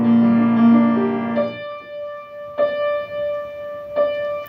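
Grand piano accompaniment alone: dense low chords that die away after about a second and a half, then a single high note struck twice and left ringing.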